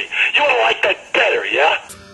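A man speaking, with nothing else heard.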